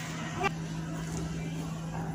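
A steady low hum, with a brief rising voice sound about half a second in.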